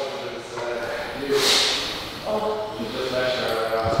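A man straining through a long dead hang from a pull-up bar: a sharp hissing breath out about a second and a half in, with faint low vocal sounds before and after it.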